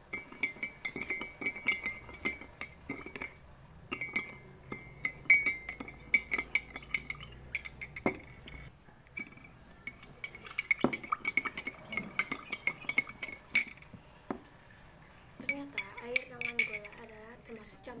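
A metal spoon stirring in a glass mug: rapid clinking against the glass with a bright ringing tone, in several spells separated by short pauses.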